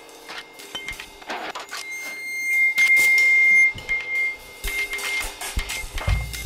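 Free improvisation on drums, percussion and electronics: scattered light taps, clicks and scrapes on drums and metal, with a steady high tone held from about two seconds in until about five seconds, loudest in the middle.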